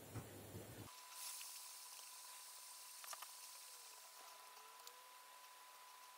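Near silence: faint room tone with a thin, steady high tone and a few faint clicks.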